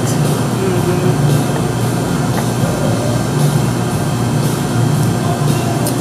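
Steady low hum of a room's air-conditioning or ventilation system, with no break or change.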